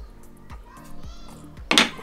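A single sharp metallic clack from a Mammut climbing carabiner near the end, over quiet background music.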